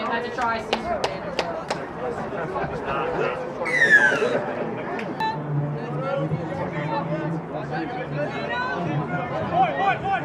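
Voices of players and onlookers chattering and calling out around a touch football game. There are a few sharp clicks in the first two seconds, and a loud, high, falling call about four seconds in.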